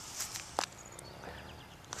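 Faint rustling of fingers working in loose soil, with a few small sharp clicks, one clearer than the rest a little after half a second in.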